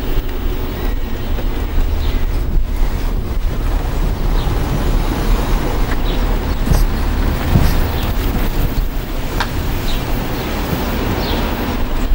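Wind buffeting the microphone outdoors: a steady low rumble, with a few faint clicks.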